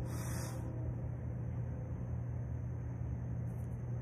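A steady low rumbling hum with no speech, with a brief hiss at the very start.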